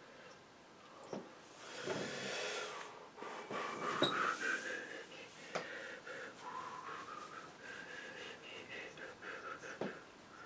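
A person breathing close to the microphone, faint, with thin whistle-like tones in the breath, and a few light clicks and taps.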